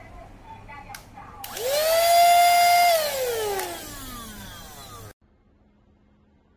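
A click, then the JOMO Living cordless handheld vacuum's motor whines up quickly to a steady high pitch and runs for about a second before winding down with a falling whine as it is switched off. The sound cuts off suddenly about five seconds in.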